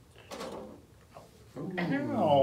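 A faint, muffled thump.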